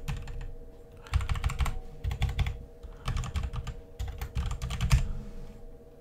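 Typing on a computer keyboard: irregular clusters of key clicks as a word in a command line is deleted and retyped, over a faint steady hum.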